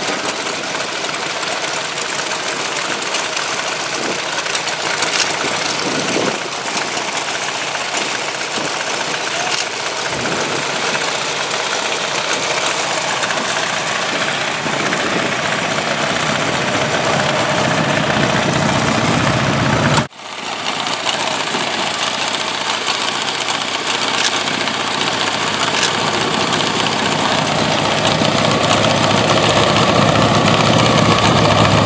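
Chopper motorcycles' V-twin engines idling steadily, growing louder in the last third, with a brief cut-out about two-thirds of the way through.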